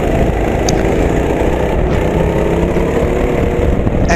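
Go-kart engine running steadily as the kart laps, heard from the driver's helmet, with a heavy low rumble underneath.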